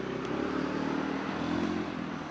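A motor vehicle's engine running nearby, its hum growing louder through the two seconds and fading soon after, as of a vehicle passing.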